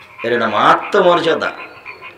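A man's voice speaking two drawn-out Bengali words into a microphone, each falling in pitch, with a short gap after.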